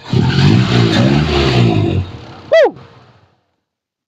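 A car engine revs loudly for about two seconds, then a short, sharply falling whistle-like tone sounds about two and a half seconds in.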